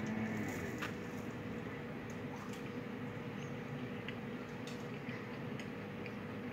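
Faint chewing of a marshmallow-topped cookie: soft, squishy mouth sounds with a few small clicks, over a steady faint hum.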